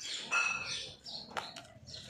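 A dog giving a short, high-pitched bark about half a second in, followed by a sharp click near the middle.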